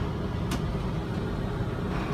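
Steady low hum of room and machine noise, with a single computer-mouse click about half a second in.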